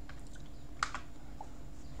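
A few soft clicks at the computer, the sharpest a little under a second in, over a faint steady low hum.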